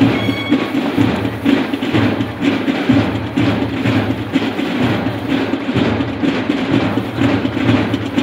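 Band music with sustained low notes over a steady drum beat, about two beats a second.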